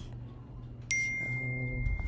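Text-message notification chime from a computer: one sudden high ding about a second in, ringing on as a single steady high tone.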